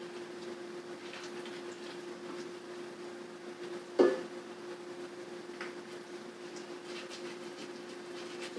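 Silicone basting brush dabbing barbecue sauce onto ribs in a cooker pot: faint soft wet dabs and ticks over a steady low hum, with one sharper knock about halfway through.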